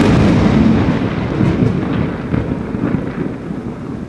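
A loud thunderclap rumbling on and slowly fading, with crackles through the rumble.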